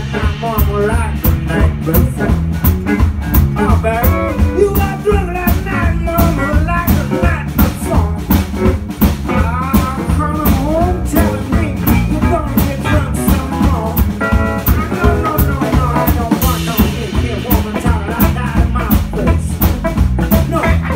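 Live blues band playing: a metal-bodied resonator guitar, electric bass and drum kit over a steady beat, with a lead line that bends in pitch.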